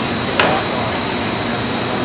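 Steady noise of running coating machinery and a busy trade-fair hall, with several steady high whines, and a single sharp knock about half a second in as a wooden panel is handled.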